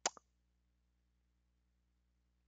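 A short, sharp double click at the very start, then near silence with only a faint low hum.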